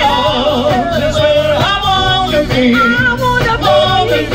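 A live band playing a soul and rock song, a woman singing lead over drums, electric guitar and keyboards.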